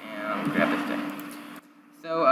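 A man's quiet, wordless murmuring over a steady low background hum, cutting to near silence shortly before the end.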